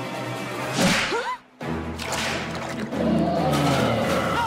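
Cartoon sound effects: a sharp whoosh about a second in, then a sudden brief silence, then low, steady, dramatic music tones that swell near the end.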